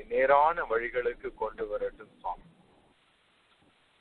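A man's voice speaking Tamil in a sermon for about two seconds, then a pause of near silence.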